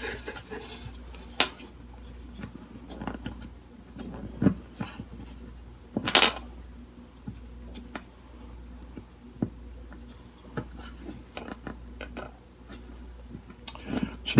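Scattered small clicks and taps of fingers working a string and bridge pin into an acoustic guitar's bridge, seating the string's end against the pin. There is a short scraping rustle about six seconds in.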